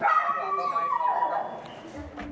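A high-pitched whining cry starts suddenly and slides down in pitch over about a second, then fades.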